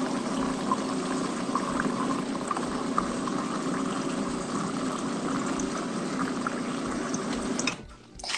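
Steady rushing, watery noise that stops suddenly just before the end.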